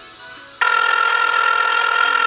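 Telephone ringback tone over a phone's speaker: one steady ring tone starts about half a second in and lasts about two seconds, as an outgoing call rings unanswered.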